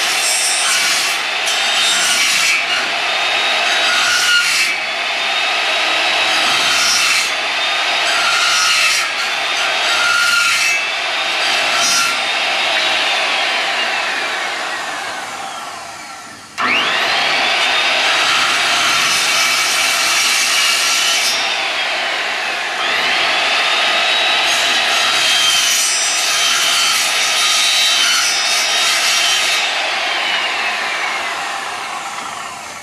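Hand-held circular saw cutting a curve in aluminum diamond plate with only a little blade showing below the plate. Its motor whine repeatedly rises and sags as the blade bites. A little past halfway the saw is let go and winds down, then is started again at once.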